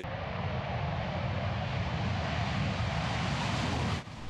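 CF-18 Hornet fighter jet taking off, its twin turbofan engines at high power: a steady, heavy jet noise, strongest in the low end, growing a little louder as the jet lifts off.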